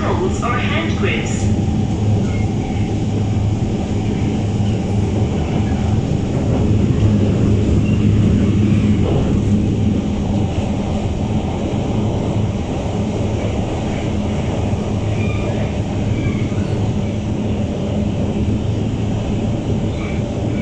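Siemens C651 metro train running at speed, heard from inside the car: a steady low hum over the rumble of wheels on the track, the hum thinning a little near the end.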